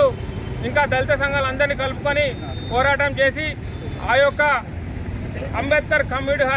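A man speaking in Telugu in short phrases with brief pauses, over a steady low rumble of outdoor background noise.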